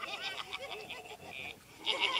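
Cartoon characters laughing on a TV soundtrack, a run of quick bleating 'ha-ha' pulses, heard through a phone's microphone; the laughter breaks off for a moment near the end and picks up again.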